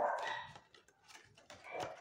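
A dog gives a short call right at the start that fades within about half a second, followed by near quiet with a few faint clicks of the paper box being handled.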